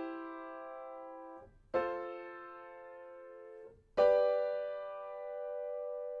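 Grand piano playing block triads in the middle register, each held about two seconds: a C major chord in first inversion (E-G-C) rings on, then F major and G major chords are struck in turn, the last held to near the end.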